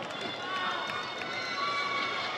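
Rubber-soled sneakers squeaking on a polished hardwood basketball court as several dancers run and step: a few short, high squeaks over steady arena crowd noise.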